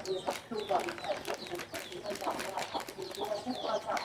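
Chickens clucking, a busy run of short, overlapping calls.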